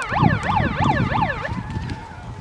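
A siren in a fast yelp, rising and falling about four times a second, signalling the start of an airsoft game. It cuts off about one and a half seconds in, leaving a faint steady tone.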